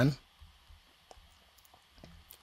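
The tail of a man's voice at the very start, then a few faint, scattered clicks of a computer mouse as a text box is dragged on screen.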